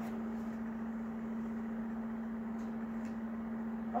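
A steady, even hum with low room noise, and a few faint soft ticks as cardboard baseball cards are handled.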